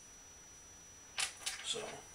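A quiet room, then a single sharp click a little over a second in, followed by a man starting to speak.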